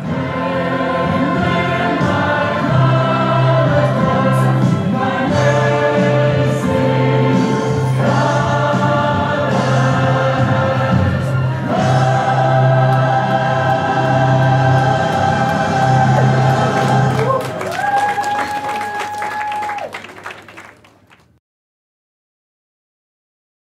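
A choir singing with instrumental accompaniment over a steady low bass note. The song ends on one long held high note that fades out just before the end.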